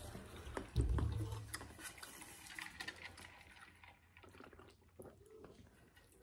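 Faint chewing and mouth sounds with scattered small clicks and knocks from handling, and a louder low bump about a second in.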